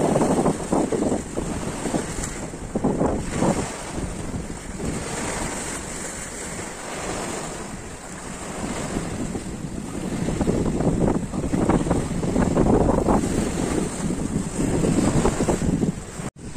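Small sea waves breaking on rocks and washing over a shallow shore, surging and easing every few seconds, with wind buffeting the microphone.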